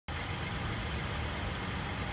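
A steady low rumble of a motor vehicle running, with a faint hiss above it.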